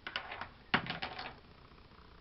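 Small objects being picked through and handled, giving a quick run of light clicks and taps in two clusters within the first second and a bit, the sharpest click near the start of the second cluster.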